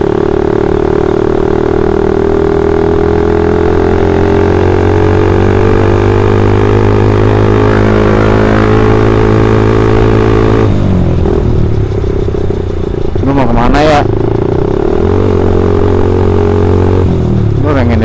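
Suzuki Satria FU's single-cylinder engine running steadily under way. About ten seconds in the engine note breaks off as the throttle closes, then rises again and holds steady before dropping once more near the end.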